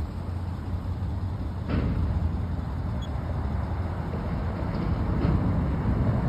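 Steady low outdoor rumble, with a light knock about two seconds in.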